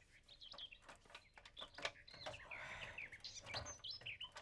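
Small birds chirping faintly, in short scattered high chirps, with a few soft clicks.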